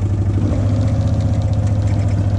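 Off-road vehicle's engine running steadily at low speed while riding: a low drone with an even, rapid pulse.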